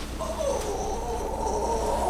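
A drawn-out, wavering high-pitched wordless vocal sound, held like a long squeal or hum.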